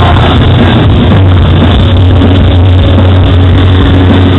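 Metalcore band playing live at full volume: heavy low guitars, bass and drums form a dense wall of sound, overloaded and smeared in the recording.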